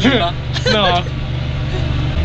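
Tractor engine running steadily under load while ploughing, heard from inside the cab as a constant low drone. A man's voice speaks briefly in the first second.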